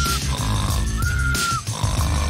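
Cartoon snoring from a sleeping character: a snorting inhale followed by a high, steady whistle on the exhale, the whistle sounding twice, over background music.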